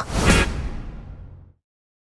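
A whoosh transition sound effect that swells briefly and fades out over about a second and a half.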